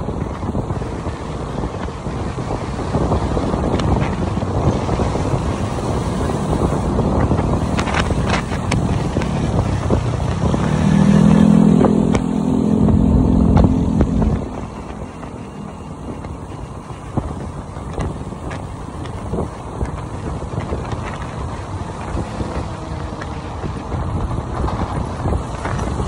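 Motorbike riding through city traffic: engine and road noise with wind rumble on the microphone. Midway it grows louder for a few seconds with a steady low engine note, then drops back.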